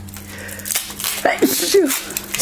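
Tape being peeled off a vacuum hose, a crackly ripping for about the first second. Then a loud sneeze near the end.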